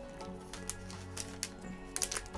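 Background music, with the crinkle of a plastic zip-lock bag being opened and handled: several short sharp crackles, the loudest near the end.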